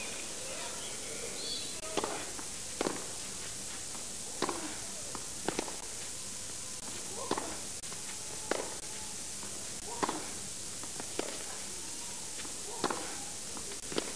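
Tennis ball struck back and forth by rackets in a baseline rally on a clay court: about nine sharp hits, roughly one every second and a half, over a steady hiss.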